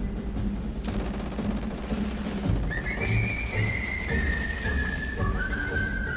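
Battle gunfire: a dense rattle of rapid shots over a low rumble. About three seconds in, a single high, thin melody line of the accompanying music comes in and steps down in pitch.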